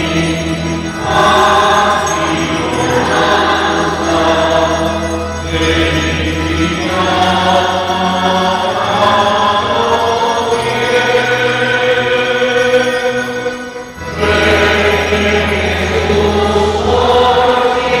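A choir singing a slow religious hymn over long-held low accompanying notes. A short break between phrases comes about fourteen seconds in.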